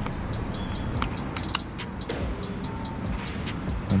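Irregular small pops and crackles of gas bubbles from a stainless steel razor blade reacting in hydrochloric acid in a glass jar, with one sharper click about a second and a half in.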